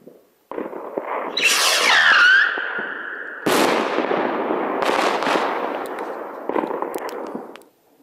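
A firework rocket with an 18 mm motor launches with a sudden rushing hiss about half a second in, with a falling whine as it climbs. About three and a half seconds in, its 3-inch nesting shell bursts with a sharp bang, followed by a rushing sound with scattered pops that fades out near the end.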